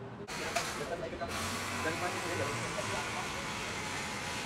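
Steady hissing kitchen noise behind a takeout counter that grows stronger about a second in, with faint voices beneath it.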